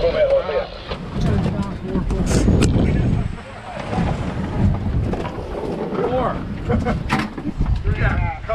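Wind buffeting the microphone and rough water rushing and slapping against a small boat's hull as it pitches in big waves, with a few sharp hits about two seconds in and near the end.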